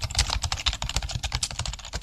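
Typing sound effect: a fast, unbroken run of keyboard clicks accompanying an on-screen title typing out letter by letter.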